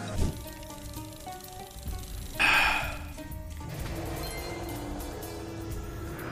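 Online slot machine game music playing steadily, with a short hiss-like burst of noise about two and a half seconds in.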